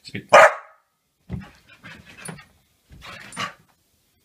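A dog barks once, loud and sharp, about half a second in. Three shorter, quieter bouts of sound follow.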